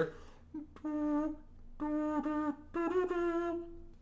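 A cappella voices holding three sustained notes, each about a second long, the last a little higher, with an effect on the voice that distorts it. A quiet bass line runs underneath.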